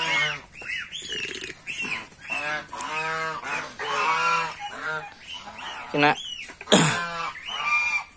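A flock of domestic geese honking, calls following one another every half second or so, with one louder, harsher call near the end.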